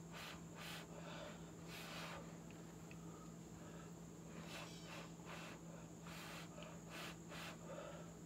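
Faint, short puffs of breath blown through pursed lips, several in irregular succession, pushing wet acrylic paint across a canvas to open up cells in the white areas of a bloom pour.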